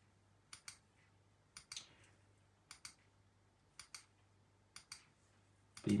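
Computer button clicks, each a quick press-and-release pair, repeated about once a second about five times as the Generate button of an on-screen random number generator is clicked over and over. A faint steady low hum runs underneath.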